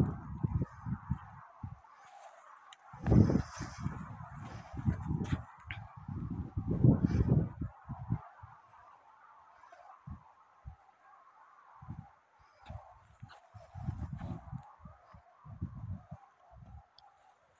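Wind buffeting a phone's microphone in irregular gusts, low rumbling bursts that come and go, strongest about three seconds in and again around seven seconds, over a fainter steady rush of wind.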